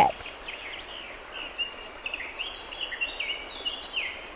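Small birds chirping and twittering in the background: many short, high calls and little pitch glides, overlapping one another.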